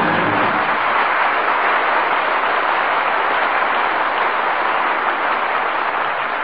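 Studio audience applauding steadily, with the orchestra's closing chord dying away in the first second.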